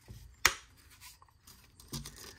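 12-volt battery pack being pushed into the handle of a Saker cordless buffer polisher and latching with a single sharp click about half a second in, followed by faint handling sounds.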